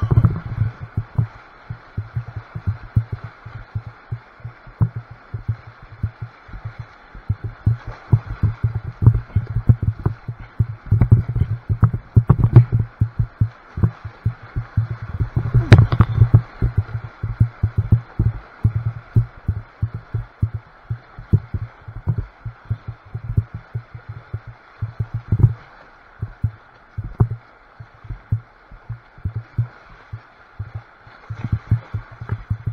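Whitewater rapids rushing and splashing, muffled, with many irregular low thumps as waves and paddle splashes strike the kayak and camera; the thumps crowd together about halfway through.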